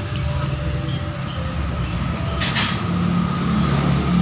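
A steady low mechanical hum, with a short metallic clink about two and a half seconds in as the spark plugs are handled.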